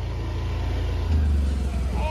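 Scooter engine running as the scooter rides up close and passes, getting louder about halfway through.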